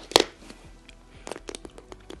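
Plastic water bottle being handled: a sharp click near the start, then faint scattered clicks and crackles of the plastic as the cap comes off and the bottle is raised to drink.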